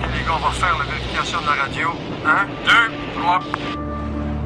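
A man talking, as in radio chatter, over a steady low rumble of aircraft in flight.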